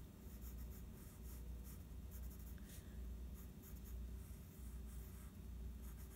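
Faint scratching of a graphite pencil on drawing paper, many short back-and-forth strokes as block letters are thickened.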